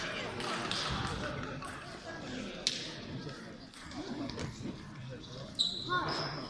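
Sports-hall ambience of a table tennis tournament: background voices and the sharp clicks of celluloid table tennis balls from play at other tables, with one distinct click about halfway through and another near the end.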